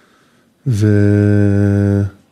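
A voice holding one long, level hesitation sound on the Hebrew word 've-' ('and') for about a second and a half, starting after a short pause.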